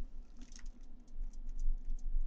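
Faint, irregular light clicks and ticks from a metal mechanical pencil being handled, its tip pressed against a fingertip to show that it does not retract.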